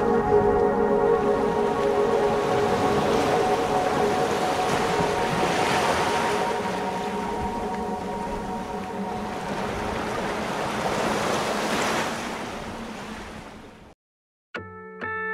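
Outro of a pop song recording: a held chord fades away over the first few seconds, leaving the sound of ocean waves washing in. The waves swell twice, then fade out at the end.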